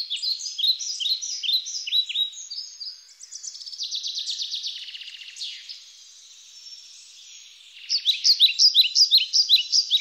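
Songbirds singing: repeated short, downward-sliding chirps, a rapid trill in the middle, then a quieter stretch before the chirping picks up again near the end.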